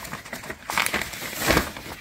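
Paper wrappings rustling and crinkling as a hand sorts through paper-wrapped comic books in a box, with a few louder crinkles about halfway and near the end.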